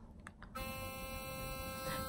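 Burst sonic electric toothbrush switched on: a faint click of its button, then about half a second in its motor starts a steady buzz in the first (whitening) mode.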